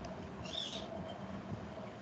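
Steady low hum of room tone, with one short high-pitched chirp a little over half a second in.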